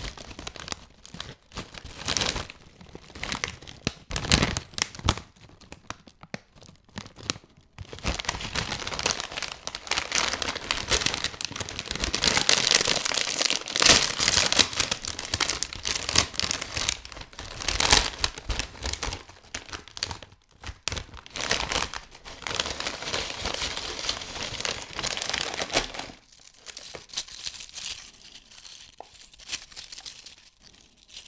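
Crunchips crisp bag of metallised plastic foil crinkling as it is handled, then pulled open at its sealed top seam with a loud, long tearing crackle in the middle. Quieter rustling follows near the end.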